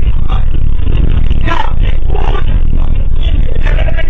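Bus engine and cabin noise picked up loud by the onboard security camera: a steady, heavy low rumble, with indistinct muffled sounds breaking in over it every second or so.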